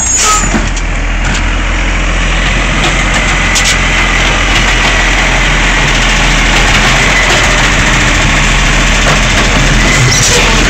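Diesel engine of an automated side-loader garbage truck running loudly and steadily at close range as the truck draws up at the kerb, with a faint high whine from about three seconds in.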